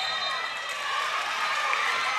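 Basketball court ambience: players' sneakers squeaking on the hardwood floor over a murmur of crowd and bench voices, during live play.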